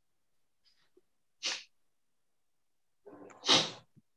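A person sneezing twice: a short sneeze about a second and a half in, then a louder one near the end that begins with a brief voiced intake.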